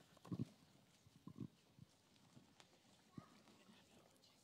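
Near silence in a room, broken by a few faint, brief low thumps: the first, about a quarter second in, is the loudest, then one more at about one and a half seconds and another near the end.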